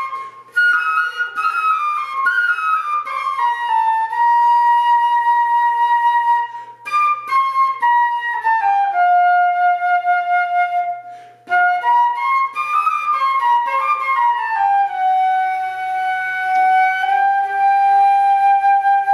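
Solo concert flute playing a slow melody in the Freygish mode. Its phrases step downward and settle on long held notes, with short breaths between them about half a second in, near seven seconds and near eleven and a half seconds.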